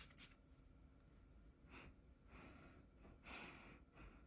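Faint sniffing at a perfume test strip: three soft, short breaths in through the nose, in a near-silent room.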